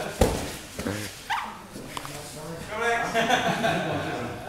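A heavy thud of bodies landing on the training mats just after the start as the two grapplers go to the ground, followed a second later by a short rising squeal and then onlookers' voices.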